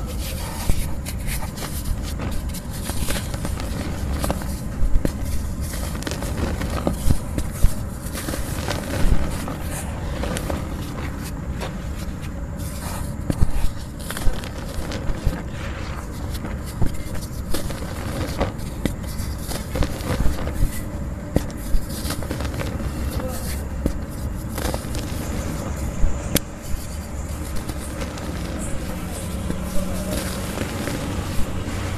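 Dry cement lumps being crumbled, with irregular sharp crackles and snaps and some scraping, over a steady low rumble.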